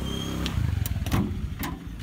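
A motor vehicle engine running steadily, with several sharp metallic clicks and knocks from hands working a steel gate's sliding bolt latch.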